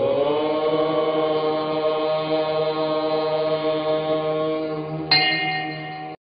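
A single voice chanting one long held note. Its pitch slides up into place at the start and the tone brightens about five seconds in, before it stops.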